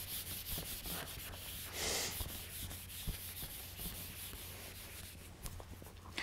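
Whiteboard eraser rubbing back and forth across a whiteboard in quick strokes, with a louder pass about two seconds in, then tapering off toward the end.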